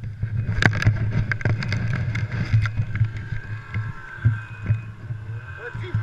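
Snowmobile engine running steadily while riding on a packed snow trail, with many short knocks and rattles over bumps.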